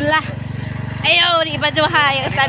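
Motorcycle engine running steadily as the bike rides along, a low even drone, with a woman's voice over it at the start and again from about a second in.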